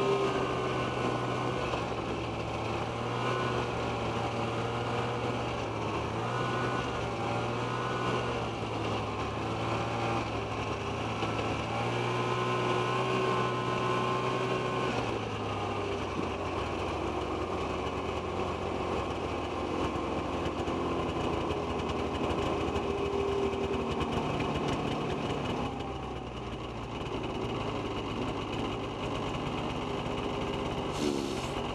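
Snowmobile engine running under way, its pitch wavering up and down with the throttle. About halfway through it settles to a lower, steadier note.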